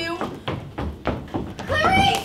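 A woman's wordless, whimpering vocal sounds, with a rising wail near the end. A few short knocks of footsteps on the stage floor come in between.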